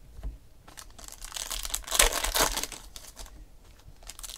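Foil wrapper of a Panini Select football card pack crinkling and tearing as it is opened by hand, starting about a second in, loudest around the middle and dying away near the end.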